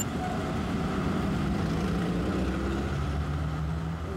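Street traffic: a motor vehicle's engine running with a steady low hum, its pitch dropping slightly about three seconds in, over general road noise.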